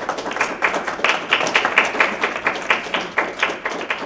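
Audience applauding, the separate hand claps of a modest crowd heard distinctly.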